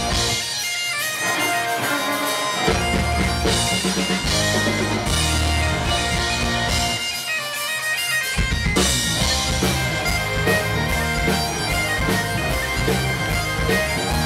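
Live Celtic rock band playing, with bagpipes carrying the tune over fiddle, electric guitar and drum kit. The bass and drums drop out twice for a couple of seconds, once near the start and once around the middle, before coming back in.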